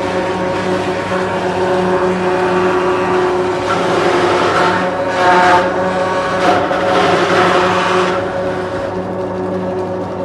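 Several electric banana fibre extraction machines running with a steady motor hum. From about four to eight seconds in it grows louder and harsher as banana stem strips are drawn through the scraping drums.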